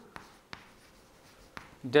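Chalk writing on a blackboard: faint scratching with a few light taps of the chalk.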